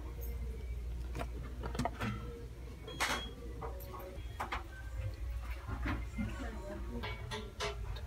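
Store ambience: faint background music and distant voices over a steady low hum, with scattered clicks as a cardboard gift box is handled and turned over, the sharpest about three seconds in.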